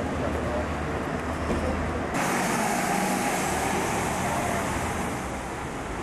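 City street traffic with a low engine hum, and the sound changing abruptly about two seconds in. People can be heard talking in the background.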